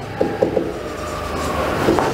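Marker pen writing on a whiteboard: rubbing strokes with several short squeaks, a cluster in the first second and more near the end.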